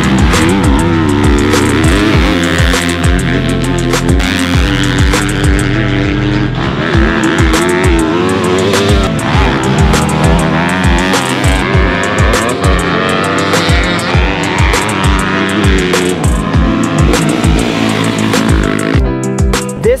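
Yamaha YZ250F single-cylinder four-stroke dirt bike engine revving up and down as it is ridden hard, mixed with loud background music that picks up a steady thumping beat about a third of the way in.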